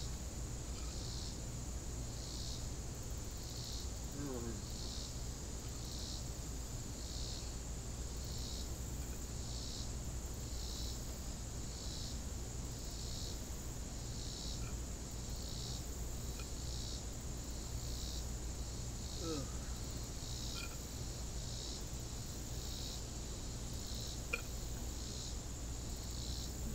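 Summer insect chorus: a steady high-pitched buzz, with a second insect call pulsing evenly a little more than once a second over it.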